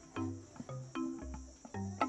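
Background music of short plucked notes, a few a second, over low held bass notes, with a steady high chirring of crickets underneath.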